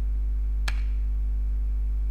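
A single computer keyboard keystroke, most likely the Enter key submitting a typed web address, about two-thirds of a second in, over a steady low electrical hum.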